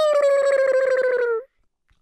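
A high, warbling vocal squeal, like a small creature's cry, held for about a second and a half and sliding slowly down in pitch with a fast rattling flutter through it before it cuts off.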